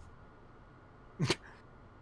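Quiet room tone broken about a second in by a single brief vocal sound, a short call that falls in pitch.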